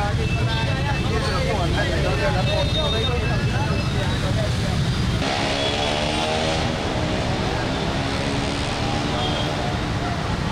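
Congested street traffic with engines running and people talking nearby. About halfway through, the voices give way to a steady, slightly falling engine drone and a brief hiss.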